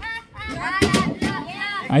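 Mostly speech: people's voices talking, with a brief sharp sound a little under a second in.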